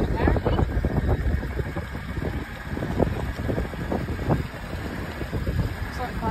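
Toyota LandCruiser Troop Carrier driving slowly, heard from inside the cabin: a steady low engine and road rumble with frequent small knocks and rattles, and wind on the microphone.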